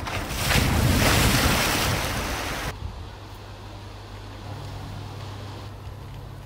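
Water splashing and sloshing as a polar bear lunges through shallow water, loud for under three seconds and then cutting off abruptly. A quieter low steady hum follows.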